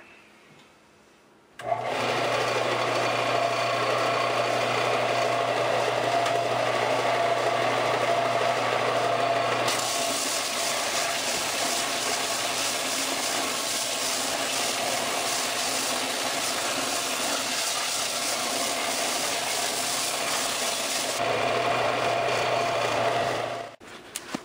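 Bench-top belt sander running with a steady motor hum, starting abruptly about two seconds in. From about ten seconds to about twenty-one seconds a harsher hiss is added as wood is pressed to the sanding belt. It then drops back to the motor alone and stops just before the end.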